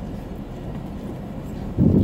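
Nissan Hardbody pickup creeping down a steep sand dune, heard from inside the cab as a steady low rumble of engine and tyres on sand. A brief louder rumble comes near the end.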